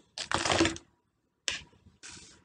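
Dry, brittle-shelled tamarind pods being set down and handled on a table: a short dry clatter and rustle, then a single sharp click about a second and a half in.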